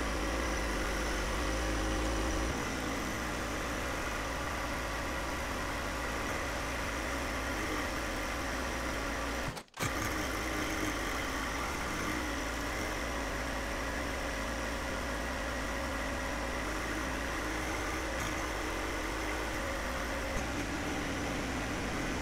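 John Deere 1025R compact tractor's three-cylinder diesel engine running steadily. The sound drops out for an instant about ten seconds in.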